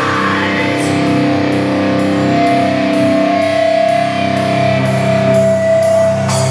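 Live heavy metal band playing: sustained, ringing electric guitar chords, with a faint high tick keeping time about twice a second.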